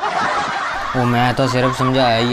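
A man laughing heartily: breathy at first, then, about a second in, a run of loud, repeated 'ha' sounds.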